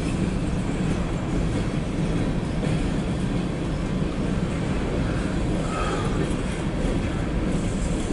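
Freight cars of a CSX mixed freight train rolling past, a steady noise of steel wheels on rail.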